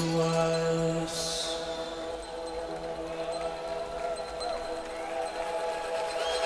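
Live melodic techno in a breakdown: the beat has dropped out and sustained synth chords hold, with a brief hissing swoosh about a second in.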